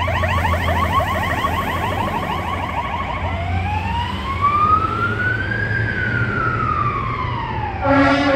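Fire engine's electronic siren, first in a fast yelp of several rising sweeps a second, then switching about three seconds in to a slow wail that rises for over two seconds and falls again, over a steady low rumble.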